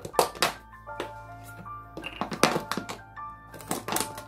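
Scissors cutting through a plastic bottle: a series of sharp, irregularly spaced snips and crackles of the plastic, over background music with sustained notes.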